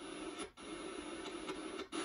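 Radio sound from a QUAD FM3 FM tuner played through old computer speakers as the tuning knob is turned, with no clear speech, cutting out briefly about halfway through and again near the end.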